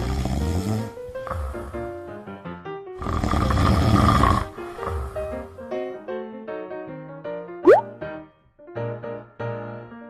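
Light background music with two long, rough snores, the second louder, in the first half. Near the end a quick rising whistle-like sound effect cuts in.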